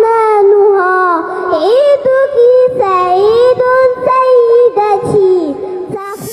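A high voice singing a melody with long held, gliding notes.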